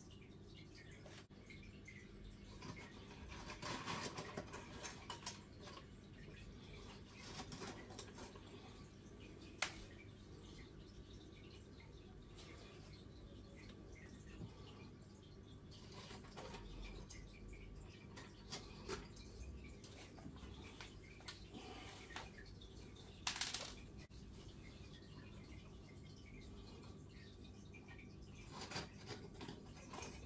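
Faint splashing and rustling of a hand working in shallow aquarium water, pushing stem plants into the sand. A sharp click comes about ten seconds in and a short, louder rush of noise about twenty-three seconds in, over a steady low hum.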